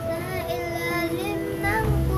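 A young girl singing a ballad over an acoustic guitar backing track, holding a long note in the second half; the bass of the track comes in near the end.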